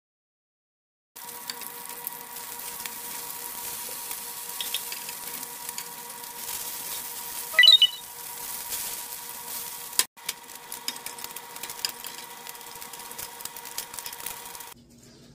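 Bacon strips sizzling and crackling in a stainless steel frying pan, starting about a second in, with a faint steady hum underneath. About seven and a half seconds in, a fork clinks sharply against the pan with a short metallic ring, the loudest moment.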